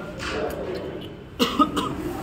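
A person coughs about one and a half seconds in, over low murmuring voices.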